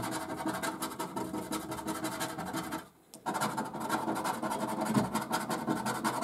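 Rapid scratching of the scratch-off coating on a £5 lottery scratchcard, in quick rubbing strokes. The strokes stop briefly about three seconds in, then carry on.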